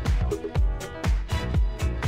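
Minimal techno DJ mix: a steady four-on-the-floor kick drum about two beats a second, with hi-hats and a looping synth pattern.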